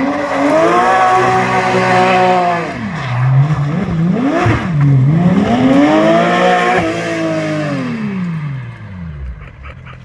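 Porsche 911 race car's flat-six engine revving hard, its note swinging up and down several times as the car is thrown through tight turns. Near the end the note drops and fades away as the car pulls off.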